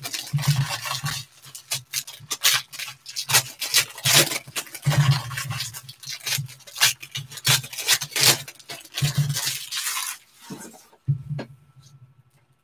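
Foil wrappers of Panini Contenders baseball card packs being torn open and crumpled by hand: a quick run of crackling rustles with soft handling bumps, which stops about a second before the end.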